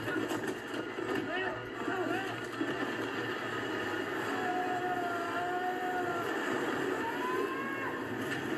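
Film soundtrack: the steady rushing roar of a waterfall, with people shouting and crying out over it. Several short cries rise and fall early on, one cry is held long near the middle, and another comes near the end.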